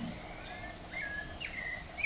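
A bird calling repeatedly: short clear notes that each drop in pitch and then hold, about two a second.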